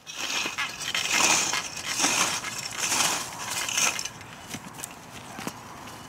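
Planet Junior wheel hoe with three cultivator teeth being moved over dry garden soil and plant debris, together with footsteps. Crunching and scraping come about once a second and grow quieter after about four seconds.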